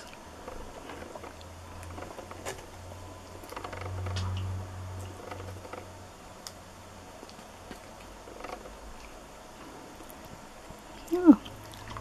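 A husky quietly sniffing and nibbling at a cupcake held to its nose, with faint small mouth clicks and a soft low rumble that swells about four seconds in.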